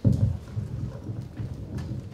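Microphone handling noise: a sudden loud bump, then a run of irregular low thumps and knocks.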